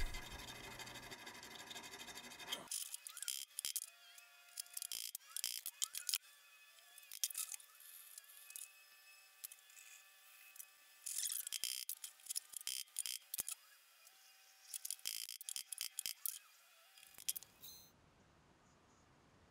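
Needle file rasping in the slot of a brass knife guard, in runs of quick short strokes with pauses between.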